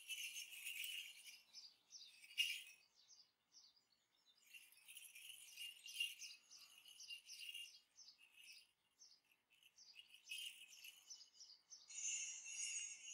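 Morris dancer's leg bells jingling faintly in uneven bursts as the dancer steps and moves, with a louder shake about two and a half seconds in.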